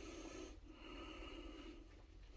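Faint breathing of a person close to the microphone, in slow in-and-out cycles, over quiet room tone.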